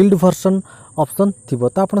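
A man's voice speaking, with a constant faint high-pitched whine underneath.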